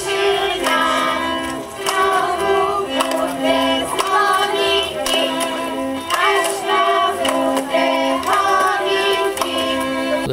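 Children singing a Moravian folk song together, with instrumental accompaniment keeping a steady beat.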